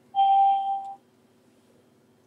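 A single steady electronic beep, held for just under a second and then cut off.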